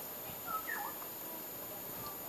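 Two or three brief high animal calls, one of them falling in pitch, about half a second in, over steady background noise.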